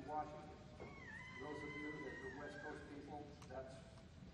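A voice at low level, with a thin, high whine held for about two seconds over it, dipping in pitch about a second in and stepping down again before it stops.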